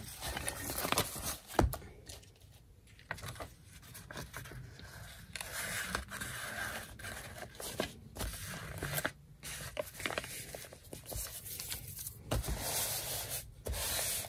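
Paper scraping and rustling as a glued paper insert is slid into an envelope pocket and pressed flat by hand, with a few soft handling knocks.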